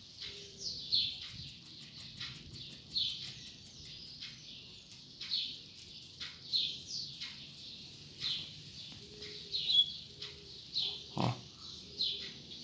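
Caged double-collared seedeater (coleiro) singing in clipped fragments rather than a full song: short, high notes that slide downward, about one a second.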